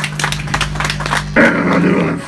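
Scattered clapping from a concert audience over a steady amplifier hum, then a man's voice comes in loud through the PA about one and a half seconds in.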